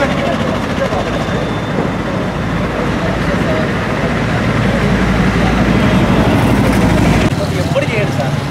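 Indistinct voices talking over roadside traffic noise, with a vehicle engine's low rumble swelling through the middle and dropping away suddenly near the end.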